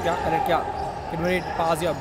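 A basketball bouncing on a wooden indoor court during play, a few short sharp knocks.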